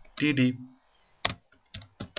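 A computer keyboard being typed on: about five separate keystrokes in the second half, a character at a time.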